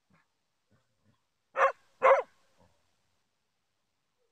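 A dog barking twice in quick succession, two short, sharp barks about half a second apart midway through.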